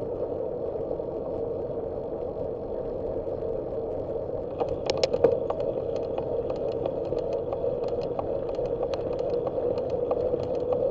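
Bicycle rolling along an asphalt street, with a steady rush of wind and road noise on the bike-mounted camera's microphone. Light clicks and rattles run through it, bunching into a louder clatter about five seconds in.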